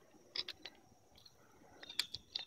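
A few faint clicks and taps from a hand working the electric Brompton's handlebar controls: a small cluster about half a second in and another near the end.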